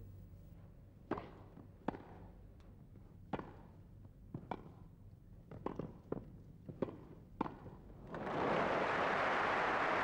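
A tennis rally on a grass court: a ball struck back and forth by racquets, a series of sharp pops roughly a second apart. Near the end the crowd breaks into steady applause as the point ends.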